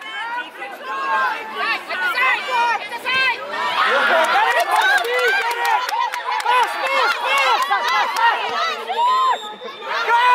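Many voices of children and spectators shouting and calling over one another during a children's football match, with a denser, louder burst of crowd noise about four seconds in.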